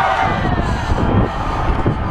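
Wind buffeting a helmet camera's microphone as a mountain bike runs fast down a dry dirt trail, with the tyres rumbling over the ground. Spectators' cheering and shouting carries through the first second and then fades.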